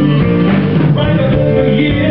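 Live rock band playing a slow blues, electric guitars over bass and drums.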